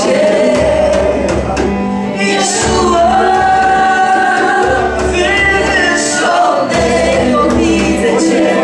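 Live church worship music: a band playing while several voices sing, with long held notes over a recurring bass pulse.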